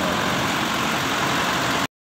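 Diesel bus engine idling steadily, cutting off suddenly just before the end.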